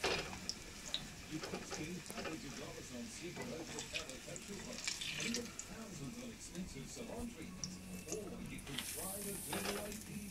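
Slotted nylon spatula scraping and tapping against a metal frying pan as fried vegetable fritters are lifted out, in scattered short clicks and scrapes, over a faint sizzle of hot oil.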